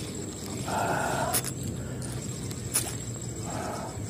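A spinning reel working while a hooked mangrove jack is played on a bent ultralight rod. There are two short bursts of reel noise, about a second in and again just before the end, with a couple of sharp clicks between them.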